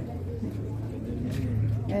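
A steady low drone under faint background voices; a voice starts near the end.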